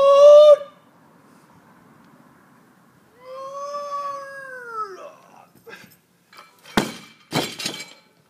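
A loud, drawn-out vocal cry at the start and a second, rising-then-falling cry a few seconds later. Near the end, a loaded barbell dropped from overhead hits the rubber mats with a crash and lands again a moment later.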